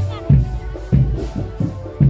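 Loud drum-band music: heavy bass-drum hits about every two-thirds of a second under a steady higher melodic line.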